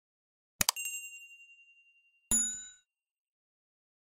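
Subscribe-button sound effects: a quick double click about half a second in, followed by a ringing chime that fades with a slight wobble over about a second and a half, then a second, brighter bell ding a little after two seconds that dies away quickly.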